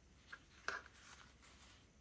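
Near silence, with two faint brief rustles about a third and two thirds of a second in as fingers sort fabric washi tape in a tin box.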